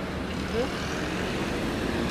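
Street traffic: vehicle engines running close by as a small van drives past a crosswalk, a steady low hum with no sudden sounds.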